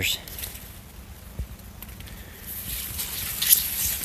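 Corn leaves rustling and brushing against the camera and body as a person pushes between the stalks, picking up about two and a half seconds in with a few sharp crackles.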